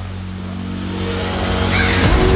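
Hardstyle build-up in a DJ mix: sustained synth tones under a rising noise sweep that swells louder toward the end, leading into the drop.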